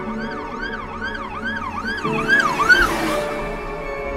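Siren sound effect in a Jersey club type beat, wailing up and down about twice a second over held synth chords. The wail quickens and climbs, then stops near three seconds in under a rising whoosh.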